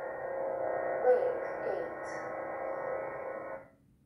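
Lightsaber sound board (Golden Harvest v3) playing its steady blade hum, with swing sounds sweeping in pitch about a second in and again shortly after. The hum fades out near the end.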